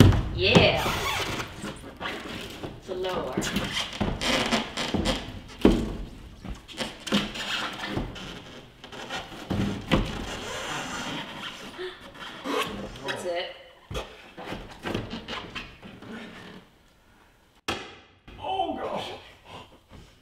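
Irregular knocks, thuds and scuffs of a climber's hands and shoes on a plywood bouldering wall, its hold volume and the padded floor as he kicks up into a handstand and hooks his feet overhead, with low voices underneath. A short lull comes near the end before a few more knocks.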